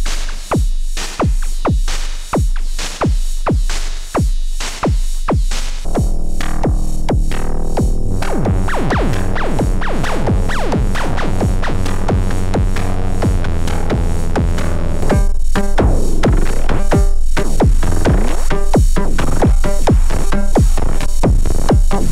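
Erica Synths Perkons HD-01 analog drum machine playing a pattern: single strikes about twice a second for the first six seconds, then a dense, sustained droning layer joins under the continuing hits and gets louder about fifteen seconds in.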